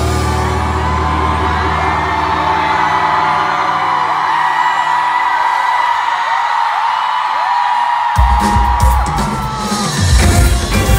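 A concert crowd screams and cheers in many high voices over a held low note from the band, which dies away about halfway through. The band comes back in loudly about eight seconds in.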